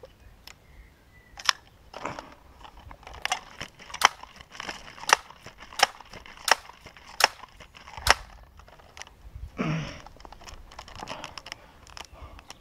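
An air rifle being pumped and handled: a series of sharp mechanical clicks, several coming about 0.7 s apart, with a short rustle near the end.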